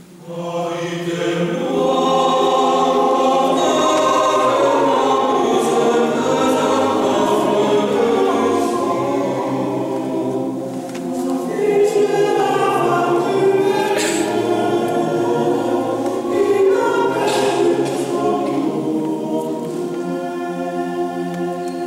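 Men's choir singing unaccompanied in several voice parts, coming in strongly just after a short pause at the start, with a slight lull near the middle before the voices swell again.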